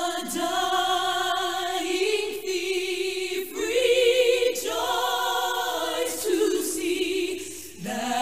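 Choral music: a choir singing long held notes with vibrato, in phrases of a second or two, over low sustained bass notes.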